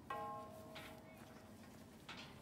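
A sudden ringing sound made of several steady pitches at once, fading away over about a second and a half.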